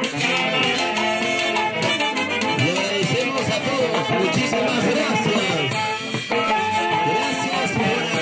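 A festival orchestra playing a lively melody with wind instruments over drums and percussion at a steady beat.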